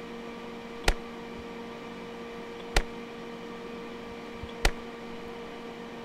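EMFields Acoustimeter AM-10 RF meter's audio output clicking sharply three times, about two seconds apart, each click a single 50-microsecond RF pulse that the meter picks up. A steady hum runs underneath.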